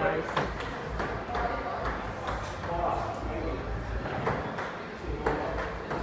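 Table tennis rally: a plastic ball clicking off paddles and the table in quick alternation, about two sharp hits a second.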